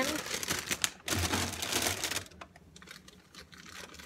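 Rustling and clattering of grocery packaging being handled, in two bursts over the first two seconds, then quieter scuffling.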